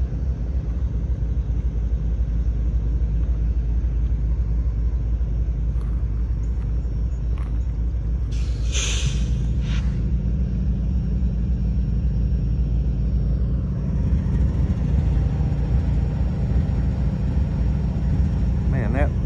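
Slow-moving freight train rolling past: a steady low rumble, with a brief hiss about nine seconds in.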